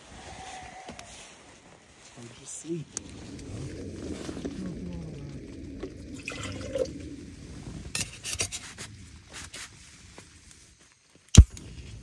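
Rustling and handling noises with faint, indistinct voices, then a moment of dead quiet and a single sharp, loud pop near the end.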